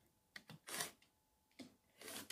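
Faint, short scrape of a rotary cutter slicing fabric along the edge of an acrylic quilting ruler on a cutting mat, with a light click just before it.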